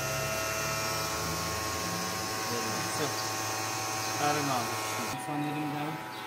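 Toyota Prius C's electric radiator cooling fan running with its repaired motor, a steady hum with a whine of several even tones. It is working again, set going by the air conditioner being switched on.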